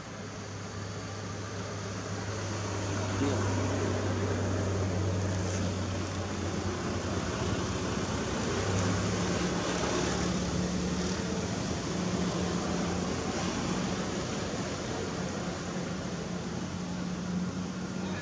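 A motor running steadily, a constant low hum over an even rushing noise; about halfway through the lowest hum fades and a higher hum takes over.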